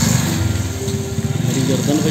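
Motorcycle engine running at low speed as the bike rides slowly along, a steady low pulsing from its firing strokes.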